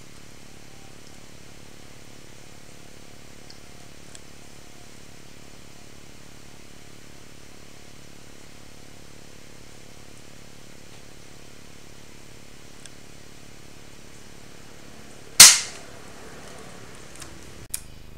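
A single sharp rifle shot about three-quarters of the way through, loud and short with a brief ring-off, over a steady low background hum.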